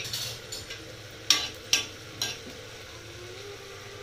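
A steel spoon stirs and scrapes coriander and cumin seeds being dry-roasted on a flat griddle (tawa). The seeds shift over a steady low hiss, with a few sharper scrapes and clicks of the spoon on the pan in the first half.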